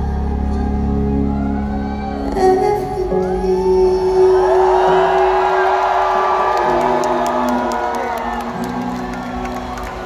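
Closing bars of a live pop ballad through a large hall's PA, with long held tones and a female voice. A crowd cheers and whoops over it from about two and a half seconds in, and scattered claps join near the end.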